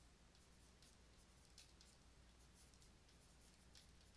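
Near silence with faint, short scratches of a stylus writing on a tablet, a handful of separate strokes.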